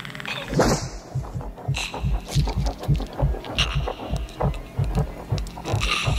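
Movie creature sound effects: a snarl about half a second in, then a rapid low throbbing of about five thumps a second, with scattered clicks, over dark film score.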